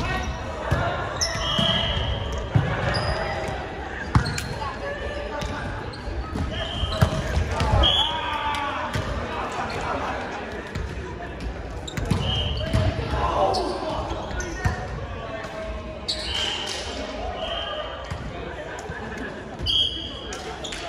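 Indoor volleyball play on a hardwood gym floor: sneakers squeaking in short bursts, the ball being struck and bouncing, and players' voices echoing around the large hall.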